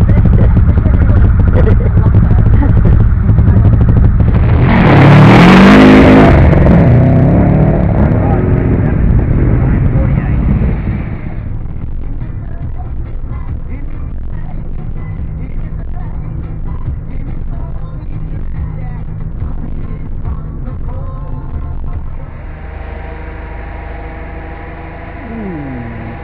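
Rally car engine running loud, heard from inside the cabin, with a hard rev that rises and falls about five seconds in. From about eleven seconds the sound drops to the quieter, steady running of a road car driving in traffic, heard from the driver's seat.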